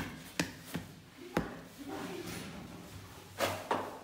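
Pide dough being divided and rounded by hand on a floured wooden worktable: about six sharp knocks and slaps on the wood, two of them close together near the end.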